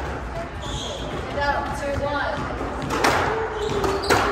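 Squash rally on a glass-walled court: the ball struck by racquets and hitting the walls, with a sharp hit about three seconds in, over background voices.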